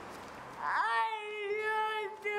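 A child's voice making one long, high-pitched held vocal sound, like a sung 'aaah'. It starts about half a second in with a quick upward slide, then stays on one steady pitch until it breaks off right at the end.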